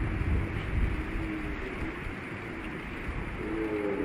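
Steady low outdoor background rumble, with faint low pitched tones in the first second or so and again near the end.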